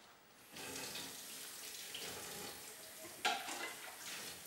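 Kitchen tap running into a sink, starting about half a second in, with a sharper clatter about three seconds in.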